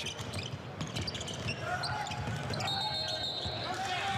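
Arena crowd noise with a basketball being dribbled on the hardwood court during live play. Near the end comes a short fluttering referee's whistle blowing for a foul.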